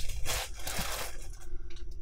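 Plastic poly mailer rustling and crinkling as it is handled on a scale, dying away after about a second and a half, leaving a faint steady hum.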